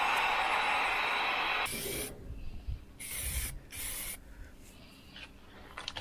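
Black & Decker heat gun blowing steadily, drying a fresh coat of spray paint on a brake caliper. It cuts off about a second and a half in and is followed by softer, broken hissing.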